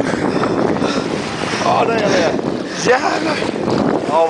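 Loud, steady rush of wind buffeting the microphone and water streaming past a sailboat's hull, with faint excited voices briefly in the middle.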